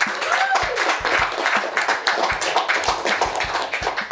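A small crowd clapping and applauding.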